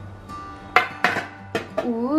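A cake tin being handled and set down, knocking sharply four times.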